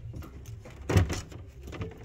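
Framed pictures knocking together as they are flipped through by hand, with one sharp clack about a second in and a lighter knock near the end.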